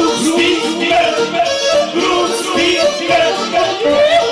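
Live folk band music: a man singing wordless sliding, swooping notes over an accordion.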